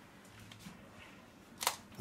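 Quiet room, then a single short, sharp plastic click about a second and a half in, from a hard-plastic wrestling action figure being worked in the hands.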